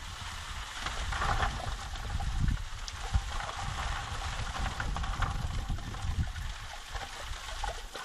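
Water poured from a plastic jug running down a small aluminum sluice box, washing gold-bearing sand over the magnetic riffles: a steady trickle and splash, with a low rumble underneath.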